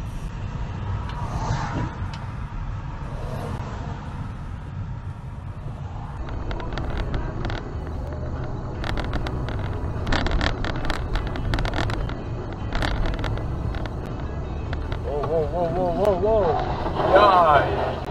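Car driving recorded from a dashcam: steady engine and road rumble, with a run of sharp clicks in the middle. Near the end comes a loud, wavering high squeal of skidding tyres as a car ahead slides into a roadside wall.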